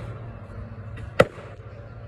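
A single axe blow into a log round about a second in: a sharp wooden chop with a short ring after it.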